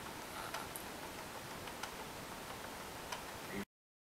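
Steady background hiss with a few faint, irregularly spaced clicks. It cuts off abruptly to silence shortly before the end.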